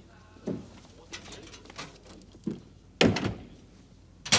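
Door sounds: a few soft thumps and clicks, then a loud sharp bang about three seconds in, like a door being shut.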